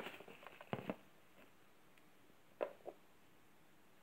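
Light clicks and knocks of hard plastic star-shaped LED lights being handled and set down on a wooden floor: a short cluster in the first second, the loudest just before one second in, then two quick clicks about two and a half seconds in.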